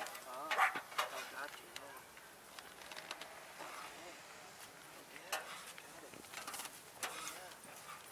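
Faint, indistinct speech with a few sharp clicks and knocks scattered through it, the loudest about five seconds in.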